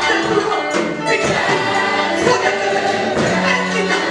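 Gospel worship music: many voices singing together, loud and steady, played through the hall's loudspeakers.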